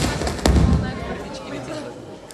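Two heavy low hits with a sharp crack, about half a second apart, from a rock band's drums and bass through the stage PA, ringing out and fading over the next second and a half.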